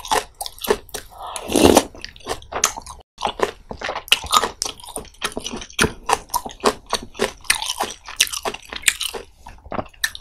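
Close-miked chewing of spicy pollack roe soup: a dense, irregular run of wet smacking, clicking mouth sounds as pollack roe and soft milt are chewed, with one longer, louder wet sound about a second and a half in.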